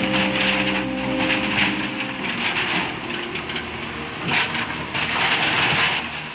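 A brick-and-wood house being knocked down by an excavator: wood cracking and splintering as debris crashes down in repeated surges.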